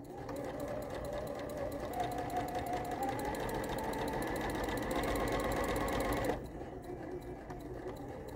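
Juki sewing machine running steadily at speed, twin-needle top stitching a hem in knit fabric, and stopping about six seconds in.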